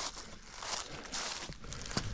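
Footsteps through dry fallen leaves on a trail, a series of short steps.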